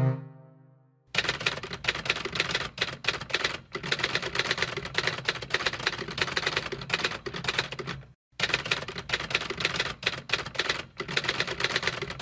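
A held music chord fades out in the first second. Then comes a run of rapid typewriter key strikes lasting about seven seconds, a brief break, and more strikes: a typing sound effect for text appearing on screen.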